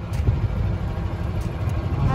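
Golf cart driving along a road: a steady low rumble of its motor and tyres.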